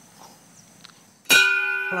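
A large hanging bell, rung by its rope, struck once about a second in and then ringing on with several steady tones that slowly fade. It is the first ring of a count.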